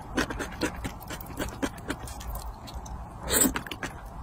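Close-miked eating sounds: chewing a mouthful of glazed eel, with many small wet mouth clicks and smacks, then one loud breathy slurp of noodles a little over three seconds in.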